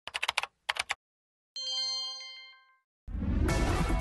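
Television news station bumper sound effects: two quick runs of ticks, then a single bright chime that rings and fades over about a second. Station music swells in near the end.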